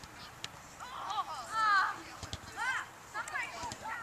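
Children's high-pitched voices shouting and calling out at a distance across an open field, in several short bursts, with a couple of faint knocks.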